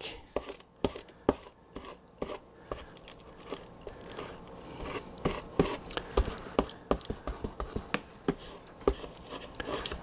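Handheld sealing iron being rubbed over thin plastic laminating film on a foam model-plane hull, with irregular small clicks, crinkles and scraping from the film as it is pressed down around a curve.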